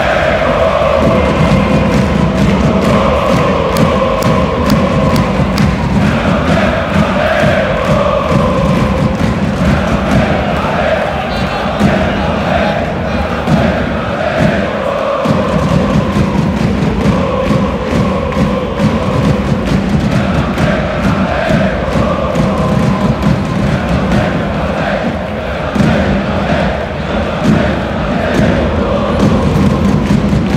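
A large crowd of football supporters singing a chant together in unison, loud and continuous, with repeated thumps beneath the singing.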